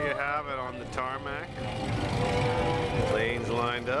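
Voices talking in the background over a steady low rumble, with speech heard in the first second and a half and again near the end.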